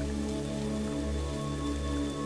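Ambient background music of steady, held tones over an even hiss of rain.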